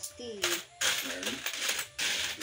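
Saved-up coins clinking and jingling as they are sorted and counted out by hand, in repeated short bursts.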